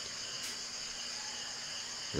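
Insects trilling steadily in a continuous high-pitched chorus.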